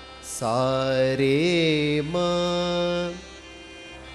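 A man singing a sustained sargam note in Indian classical style. His pitch swings up and back down about a second in, then settles on a held steady note that stops about three seconds in. A faint steady drone continues beneath.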